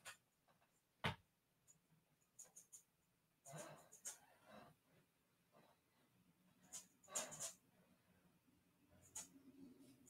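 Near silence broken by faint rustling and a few soft clicks: a handheld light being handled and switched while light painting.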